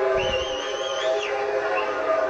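A high, wavering whistle lasting about a second, over steady background music.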